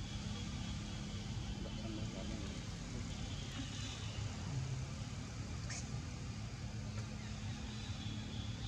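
Steady low rumble with a faint constant hum, with brief faint voices about two and four and a half seconds in.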